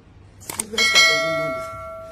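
A sharp click about half a second in, then a bright multi-tone bell ding that rings on and slowly fades: a subscribe-button and notification-bell sound effect.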